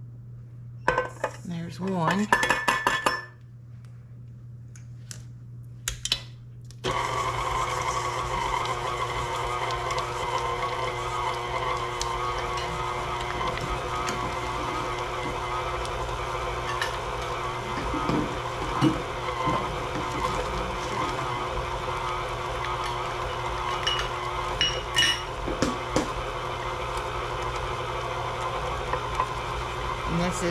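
A spatula scrapes and clatters against a steel mixing bowl. About seven seconds in, a KitchenAid Classic stand mixer switches on and runs steadily, its flat beater creaming softened blocks of cream cheese for cheesecake batter, with a few knocks.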